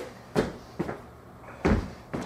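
Footsteps on a wooden floor: three thuds, the loudest and deepest near the end.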